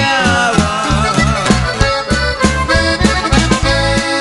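Norteño band playing an instrumental break in a corrido: button accordion carrying the melody over bass and drums with a steady beat.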